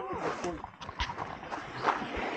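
A few footsteps on a path while walking, with faint voice sounds in the background.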